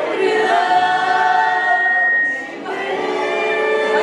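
Live female vocals singing a pop medley over electric keyboard, with long held notes; the singing dips briefly about two and a half seconds in.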